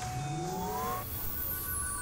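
Cinematic sound-design transition within the film score: a held tone with several tones gliding upward in the first second, then a high shimmering sweep that falls in pitch over a low rumble.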